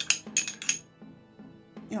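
A spoon clinking against a small glass jar several times in quick succession while stirring paint thinned with water, for about the first second.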